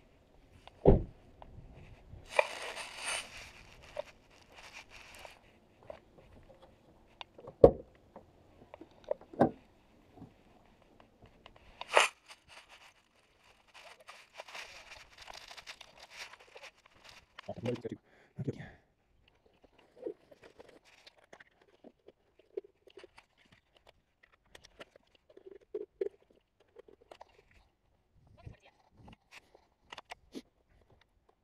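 Handling noise of FPV gear being unpacked at the open back of an SUV: scattered knocks and clunks, with two longer stretches of rustling a few seconds in and about halfway through.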